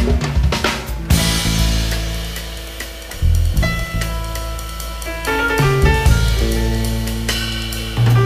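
Live jazz-fusion band playing. The drum kit is prominent, with a loud drum and cymbal hit about a second in, under deep bass and held notes that change every second or two.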